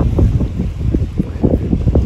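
Wind buffeting the microphone in loud, irregular low rumbles and gusts.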